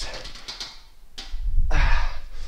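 A man's breathing and body movement during a TRX suspension-strap rollout: a short hiss at the start, a sharp click about a second in, and a loud breathy exhale near the end that runs into a spoken "But".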